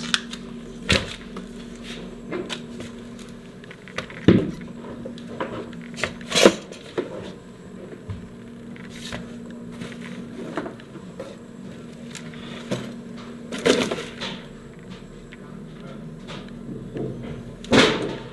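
Scattered knocks and clicks at irregular intervals over a steady low hum, the loudest about four seconds in, about six seconds in, near fourteen seconds and at the end.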